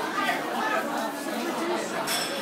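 Indistinct chatter of several diners talking over one another, with no clear words.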